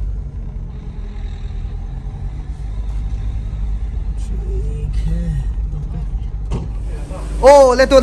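A car's steady low road and engine rumble, heard from inside the cabin while driving slowly, with faint voices in the middle. A man starts talking loudly near the end.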